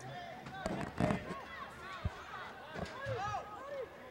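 Distant voices of players and spectators calling out across an outdoor soccer pitch, scattered and overlapping, with a sharp knock about two seconds in.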